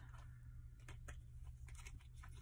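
Near silence: low steady room hum with a few faint ticks.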